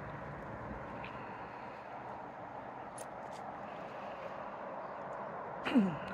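Steady outdoor background noise with no distinct source, and a few faint clicks about one and three seconds in.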